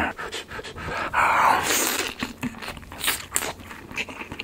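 Close-miked eating of skewered Korean fish cake (eomuk): wet chewing and mouth clicks, with a loud, breathy huffing stretch about a second in.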